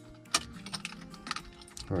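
A sharp click about a third of a second in, then lighter clicks and taps: the key being turned in a Honda S2000's ignition switch and the key fob handled, while cycling the ignition to put the car into remote-programming mode.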